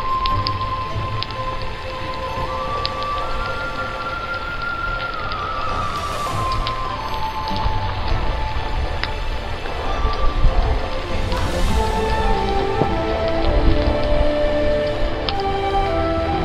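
Slow instrumental background music with long held notes, over the irregular crackling and popping of a wood fire burning a heap of snail shells to make lime.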